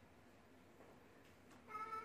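Near-silent room tone, broken near the end by one short, high-pitched call held at a steady pitch.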